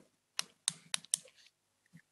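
Four short, sharp clicks in quick succession, about a quarter second apart, followed by a faint tap near the end.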